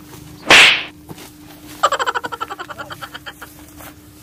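A loud, sharp smack about half a second in, a dubbed hit sound effect in a staged fight. About a second later comes a rapid rattling series of short pulses, about ten a second, that fades out over a second and a half.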